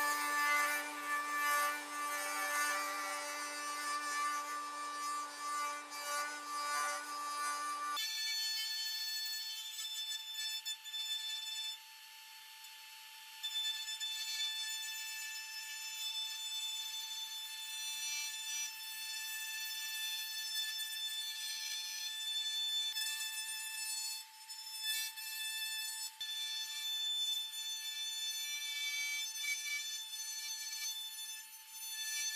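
Bosch GOF 1600 router motor running steadily at speed in a pantorouter while cutting a tenon, a pitched whine. About eight seconds in the pitch jumps sharply up as the footage is sped up threefold, turning it into a high steady whine, with a brief quieter gap a few seconds later.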